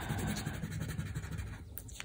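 Crayon scratching across paper in quick short strokes as a sheet is coloured in, dying away near the end.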